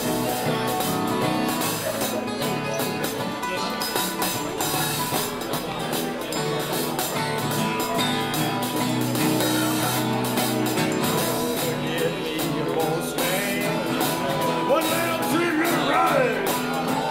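A small group of guitars playing a blues tune together at a steady, even level.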